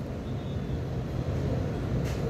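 Steady low background noise, an even rumble with faint hiss above, with no distinct events.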